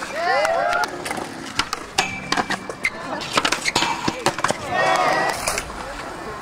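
Skateboards on a concrete skatepark: wheels rolling and repeated sharp clacks of boards hitting the ground and obstacles. Voices call out, once just after the start and again near the end.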